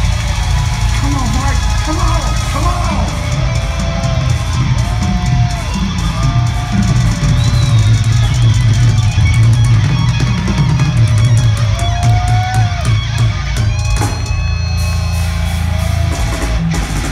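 Industrial metal band playing live: drum kit and distorted electric guitar, heard from within the crowd.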